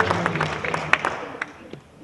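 Audience applause fading out, the claps thinning to a few scattered ones and dying away by about a second and a half in.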